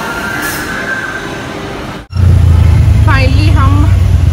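A spinning amusement ride running, a steady rushing noise with a faint high whine. About halfway through this cuts abruptly to the low steady drone of an auto-rickshaw's engine heard from inside the cab, and a woman starts talking about a second later.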